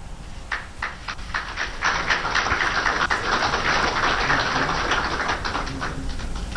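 Many rapid, overlapping clicks from the room. They start scattered about half a second in, build into a dense clatter, and thin out near the end.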